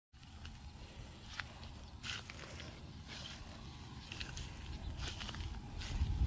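Outdoor field ambience: a steady low rumble with short, faint chirps and clicks scattered throughout.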